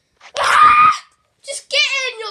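A loud scream starting about a third of a second in and lasting under a second, followed near the end by a high, wavering cry.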